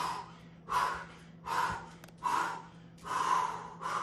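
Heavy, rapid breathing from a person exercising hard through plank-to-low-plank transitions, a forceful breath roughly every three-quarters of a second, the sign of fatigue late in the set.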